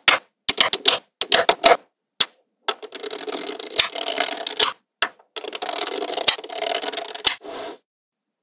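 Small neodymium magnetic balls clicking sharply together as strips are snapped into place, then two long runs of rapid clattering, each about two seconds, as a strand of balls is laid down along the rows of the slab.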